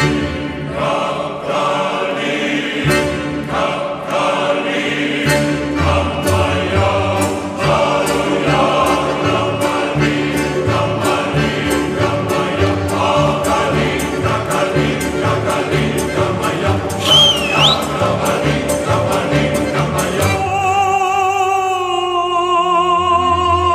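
Choral music with singing over a fast, steady beat. A brief high sliding tone rises and falls a little past the middle, and near the end the beat drops out, leaving held, wavering sung notes.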